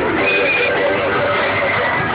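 Loud dance music from a wheeled PA system with crowd noise, and a marcher's short, high whooping shout near the start.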